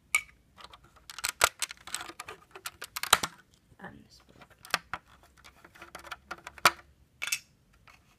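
Lego bricks and plates clicking and clattering as pieces are lifted off a brick-built model and handled: a run of sharp plastic clicks, busiest in the first half, then a few single louder clicks.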